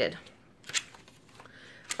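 Paper handling as a page of a printed pattern booklet is turned: a brief rustle about two-thirds of a second in, then a fainter, softer rustle.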